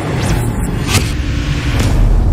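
Cinematic logo-reveal sound effect: a swelling low rumble with whooshing noise, cut by a sharp hit about a second in and another near the end.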